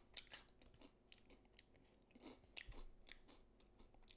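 Near silence with a few faint, scattered short clicks.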